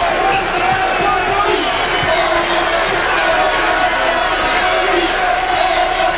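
Arena crowd noise during a basketball game, with a ball being dribbled on the hardwood court.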